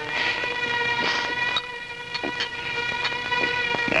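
A sustained musical chord of several steady pitches, held through with only small swells.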